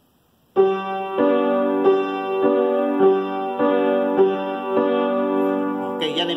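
Upright piano playing a short melody that moves in skips, leaping over keys rather than stepping to the next one. The notes begin about half a second in and follow at an even pace, a little under two a second, each left ringing into the next.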